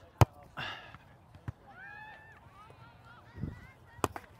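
A volleyball struck by hand outdoors: one sharp smack about a quarter second in, then a softer, duller thud near the end as play goes on.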